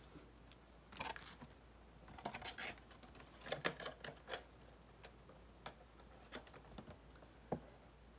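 Faint, scattered light clicks and rustles of trading-card foil packs and a cardboard blaster box being handled.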